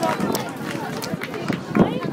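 Folk dancers' feet stamping and stepping on pavement amid a mix of voices, with a heavier thump near the end.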